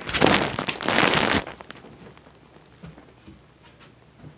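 Handling noise on a phone's microphone as the phone is picked up and moved: loud rustling and rubbing for about the first second and a half, then a few faint clicks as it is set down.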